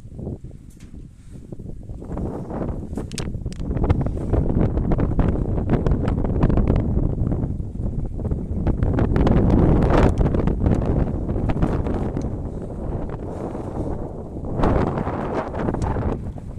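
Wind buffeting a phone's microphone: a gusty low rumble that swells and eases, strongest around the middle, with another gust near the end.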